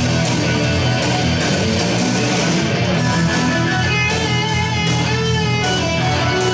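Electric guitar solo played live in a rock/metal style: quick runs of notes, then a long held note with vibrato about four seconds in, over a steady low backing.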